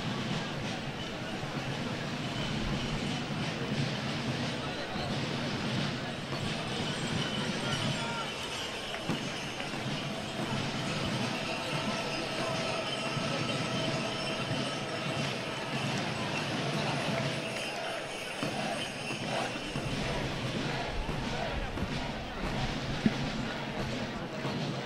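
Steady murmur of a large crowd of spectators.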